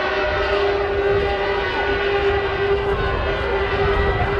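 Stadium crowd noise during a Gaelic football match, with a steady, unchanging tone running through it the whole time.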